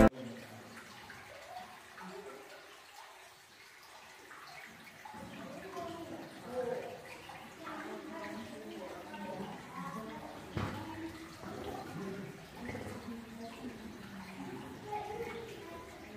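Faint, indistinct voices of people echoing in a cave, over a soft sound of running water.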